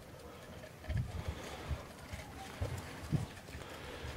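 A few dull, low thumps and knocks from a coiled corrugated plastic drainage pipe, clustered about a second in and again near the three-second mark: a ferret scrambling through the tube.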